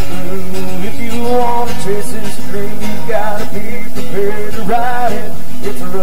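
Two acoustic guitars strummed in a live country song, with a melody line of held, wavering notes over the chords.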